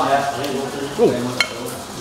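Metal spoon and fork scraping on a dinner plate while eating, with a sharp clink about one and a half seconds in.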